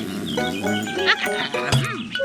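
Cartoon background music with short dog-like vocal sounds from a character voice, including a quick rising-and-falling pitch glide near the end.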